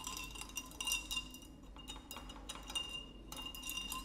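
Light clinks and taps of laboratory glassware at a bench, with a faint glassy ring, as a beaker of water is handled for a salt-dissolving demonstration.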